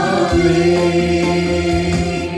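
A small worship group of women's and a man's voices singing a hymn together through microphones, holding long sustained notes.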